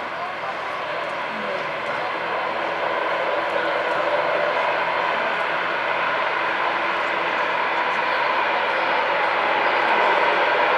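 Airliner engine noise heard from inside the cabin, a steady whine and rush that grows gradually louder, with voices in the background.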